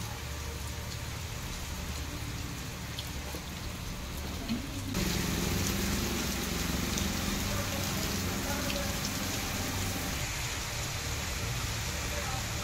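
Steady light rain falling on wet ground and leaves, an even hiss. About five seconds in it turns suddenly louder, with a low hum underneath.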